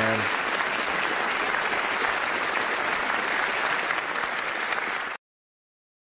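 Large concert audience applauding, a dense steady clapping that cuts off suddenly about five seconds in, leaving silence.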